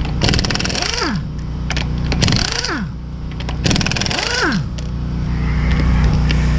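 Pneumatic impact wrench loosening wheel lug nuts in three short bursts, about two seconds apart. Each burst is a rapid hammering whose motor pitch rises and then drops as the trigger is let go.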